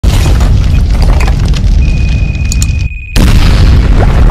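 Loud, bass-heavy explosion sound effect for an animated logo intro: low booms throughout, a steady high tone joining about two seconds in, a brief drop-out, then a sudden blast a little after three seconds.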